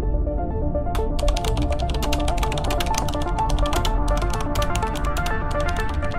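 Background music with rapid keyboard-typing clicks starting about a second in and running on in a quick, uneven patter: a computer typing sound effect.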